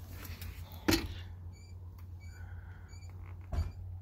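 A steady low hum inside a semi-truck's sleeper cab, with a knock about a second in and another near the end, and three faint, short high beeps evenly spaced in the middle.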